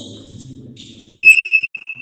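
A sudden loud, high-pitched ringing tone about a second in, breaking into a run of shorter pulses that come quicker and quicker and fade away.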